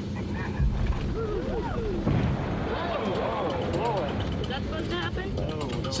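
Titan IV solid rocket booster firing on a test stand and blowing up: a dense rumble broken by heavy booms about half a second and two seconds in.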